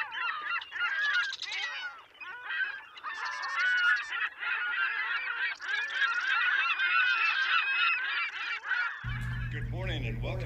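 A flock of birds calling at once: a dense chorus of overlapping honking calls. About nine seconds in it gives way to a steady low hum.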